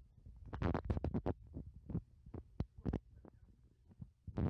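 A quick run of scratching, tapping knocks, bunched together about half a second to a second and a half in, then a few single knocks.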